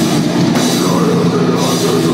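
Hardcore band playing live, loud and dense: electric guitars and a drum kit with cymbals, heard from within the crowd.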